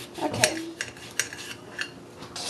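Kitchen knife slicing an onion in a ceramic bowl, the blade clicking sharply against the bowl about five times, loudest about half a second in.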